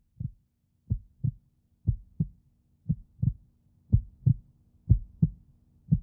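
Heartbeat sound effect in a logo sting: pairs of short low thumps about once a second, growing louder, over a faint steady hum that comes in about a second in.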